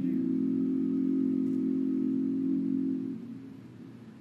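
A cappella barbershop-style male voices holding one low sustained chord, which is released about three seconds in.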